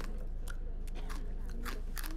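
Crunchy snack being bitten and chewed, with about four crisp crunches spaced through the moment.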